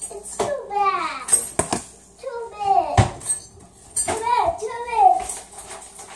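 High-pitched wordless voice sounds, gliding up and down, over a few sharp clicks and knocks from plastic food-storage containers being handled.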